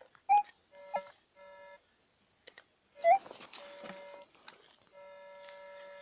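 Metal detector sounding its target tone: several short beeps, then a longer steady tone near the end, as the search coil passes over the dug hole. Two brief, louder rising chirps cut in, about a third of a second in and again about three seconds in.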